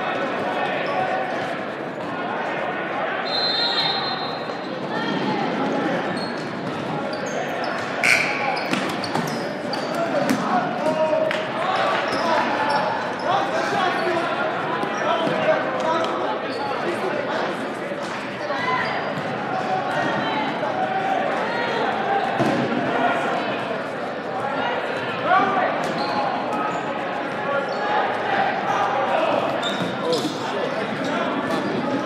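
Dodgeballs smacking against the floor, walls and players at irregular intervals, the sharpest hit about eight seconds in. Continuous overlapping shouting and chatter from players and onlookers runs underneath, echoing in a large gym.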